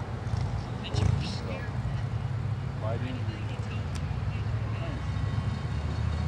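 Low, steady rumble of three approaching GE diesel road locomotives, a Dash 8-40C and two Dash 9-40CWs, their engines running as the train draws near, briefly louder about a second in.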